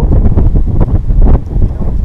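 Wind buffeting the microphone: a loud, gusting rumble.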